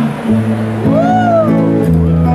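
Live music with guitar accompaniment; about a second in, a woman's voice sings one high note that swoops up and then falls away.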